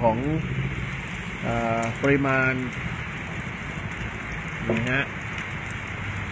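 Steady rain falling, an even hiss that holds without change.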